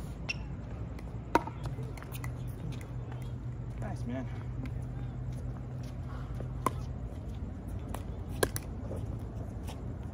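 Sharp hollow pops of a plastic pickleball struck by paddles, a few scattered hits: one about a second and a half in and two more in the second half, with a low steady hum underneath.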